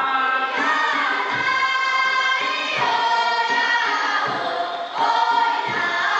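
A chorus of young voices singing a Puyuma (卑南族) folk song together, held notes linked by slides in pitch, with short breaks between phrases.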